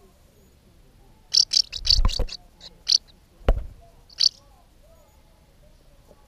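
House martin calls: a quick series of short, high chirps between about one and three seconds in, and one more a little past four seconds. Two dull knocks fall among them, the second a sharp single knock about three and a half seconds in.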